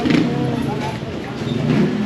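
Busy street ambience: people chatting close by over the steady noise of traffic and a vehicle engine.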